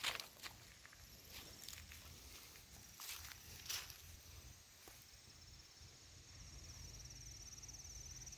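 Faint footsteps on pavement, a few scuffs in the first four seconds. From about halfway a steady high insect trill joins in and runs on.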